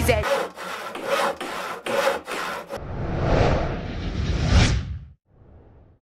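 Rhythmic rasping strokes, about two or three a second, then a longer swell of rushing noise that cuts off about five seconds in.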